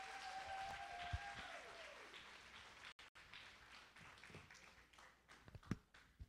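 Audience applauding at the end of a talk, fading out over about two seconds, with one long held cheer near the start. A few faint knocks follow near the end.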